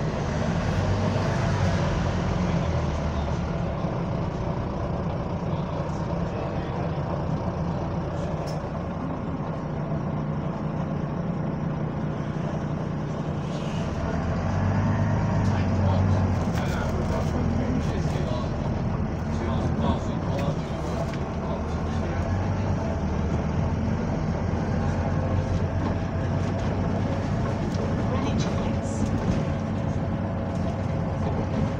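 Double-decker bus running on the road, its engine hum and cabin rattle heard from inside on the upper deck, getting louder for a couple of seconds about halfway through.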